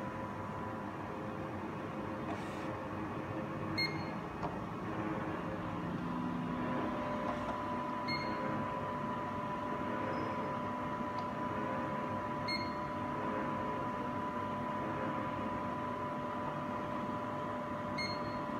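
Zeiss Contura coordinate measuring machine humming steadily with a faint whine, while its stylus touches the aluminium part three times, each contact a sharp click followed by a short high beep as a measuring point is taken for a plane.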